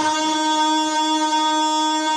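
A man's voice holding one long, steady sung note through a microphone and PA, in unaccompanied manqabat recitation.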